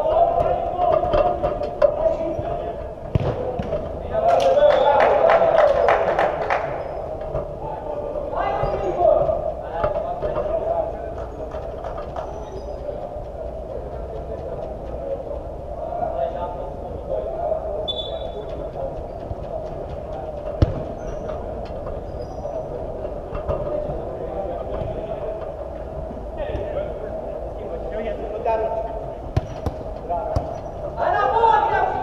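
Echoing sounds of an indoor small-sided football game in a large hall: players calling out and the occasional thud of the ball being kicked, with a louder stretch of shouting about four to seven seconds in.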